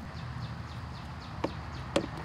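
Two short clicks about half a second apart, from hand-working at the drain plug of an outboard's lower gearcase, over a low steady hum.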